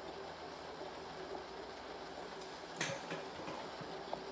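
Quiet, steady background hiss of a film soundtrack played back through a computer's speaker, with one short knock about three seconds in.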